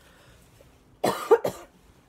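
A person coughing, a quick burst of two or three coughs lasting about half a second, starting about a second in.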